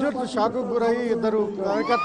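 A man talking in Telugu into a handheld microphone, in a reporter's piece to camera, with some drawn-out vowels.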